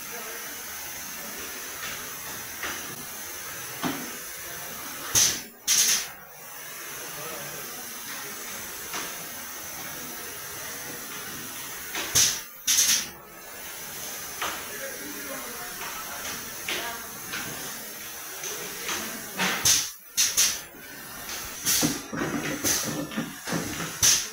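Automatic four-head servo screw-capping machine running, under a steady hiss, with sharp hisses of compressed air that come in pairs roughly every six to seven seconds and more often near the end.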